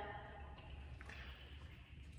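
A quiet room with a steady low hum and two faint clicks, about half a second and a second in, as a plastic water bottle is drunk from and handled.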